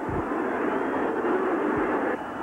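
Stadium football crowd, a steady wash of many voices reacting to a missed scoring chance.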